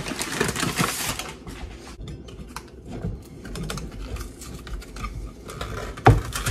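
A bag of all-purpose flour crinkling and rustling as it is grabbed and handled, densest and loudest in the first second. After that come scattered light clicks and rustles of kitchen items being moved about.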